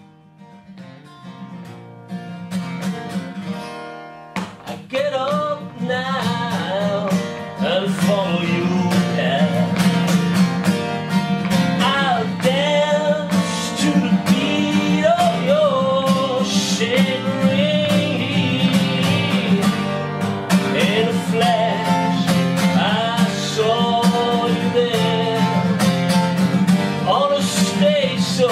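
Acoustic guitar folk song, fading in at the start, with a low note ringing on under steady strumming. A man's singing voice joins about five seconds in.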